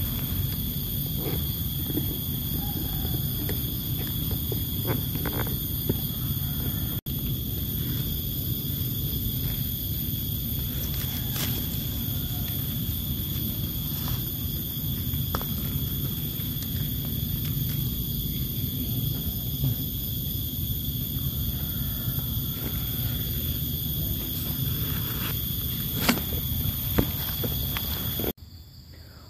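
A steady low rumble under a constant high-pitched insect drone, with a few soft clicks and rustles.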